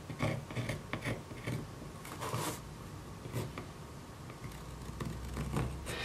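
White pencil drawing a cut line on a Kydex thermoplastic sheet: a series of short scratchy strokes, closely spaced at first and thinning out in the second half.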